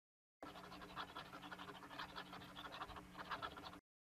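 Faint scratching of a marker writing by hand, with short stroke after stroke. It starts about half a second in and stops just before the end, over a low steady hum.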